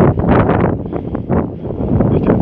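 Wind buffeting the microphone: a loud, uneven low rumble with gusts.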